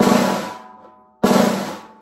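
Single press (buzz) strokes on a snare drum: the stick is pressed into the head so it bounces rapidly into a short buzz. Two strokes about a second and a quarter apart, each starting sharply and fading away over about a second.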